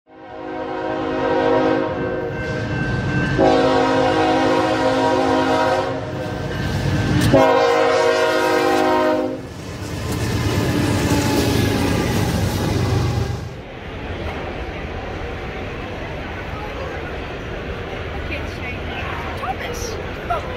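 BNSF diesel freight locomotive sounding its multi-chime air horn in several long blasts, then the train rumbling past on the rails. About 14 s in the sound cuts to the steady hum and chatter of a crowded indoor hall.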